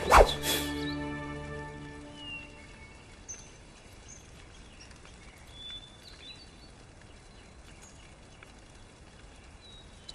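Two quick, sharp swishes near the start over soft sustained background music, which fades out within about two seconds. Then a quiet outdoor background with a few scattered bird chirps.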